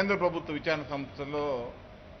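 A man speaking, stopping briefly near the end.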